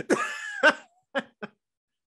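A person's cough-like burst of laughter, followed by two short, sharp laugh pulses.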